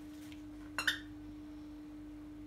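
A small dog playing with a blanket, with one brief high squeak a little under a second in. A steady low hum runs underneath.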